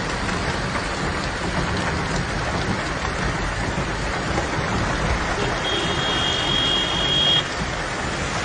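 Heavy rain and floodwater rushing through a street, a loud, dense, steady wash of noise. A high steady beep sounds for about two seconds near the end.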